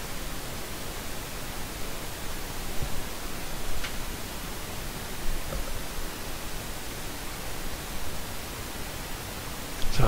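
Steady hiss of the recording's background noise, with one faint click about four seconds in.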